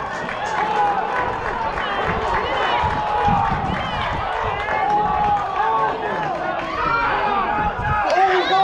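Several people shouting and yelling at once, high-pitched calls overlapping throughout: spectators and players calling out during a baseball play.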